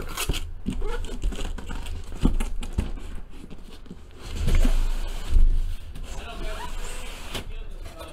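Cardboard cases being handled: a cardboard inner case shifted and lifted out of a larger cardboard master carton, with rubbing, scraping and a series of knocks. The loudest is a heavier thump about five seconds in.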